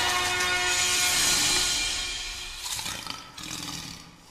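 Intro music closing with a lion roar sound effect, a loud rushing roar that swells about a second in and then fades away.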